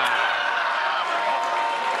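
Arena crowd cheering in a steady, even roar of voices, reacting to a slam in a wrestling match.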